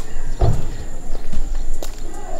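A few footsteps on hard paving, the first a dull thud about half a second in and the later ones fainter knocks, over steady outdoor background noise.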